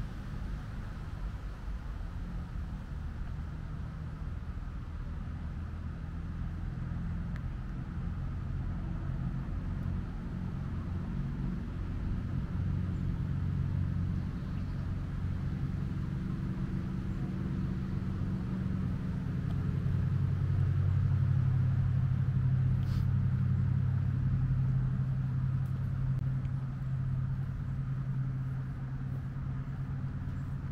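Low, steady engine rumble from a motor vehicle or boat some way off. It grows louder past the middle, peaks a little after 20 seconds, then eases off.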